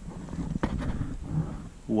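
Low rustling handling noise as fingers turn a small glass marble, with one sharp click a little over half a second in.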